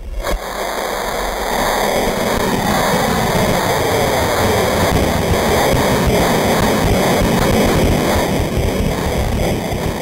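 High-power rocket motor (AMW L-1400 Skidmark, a sparky motor burning metal flakes) igniting and firing at lift-off. It comes in suddenly and loudly, then holds as a steady, heavy rushing noise while the rocket climbs away.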